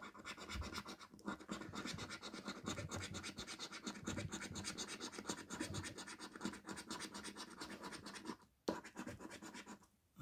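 A coin scratching the scratch-off coating from a paper scratchcard in rapid back-and-forth strokes, with brief pauses about a second in and again near the end.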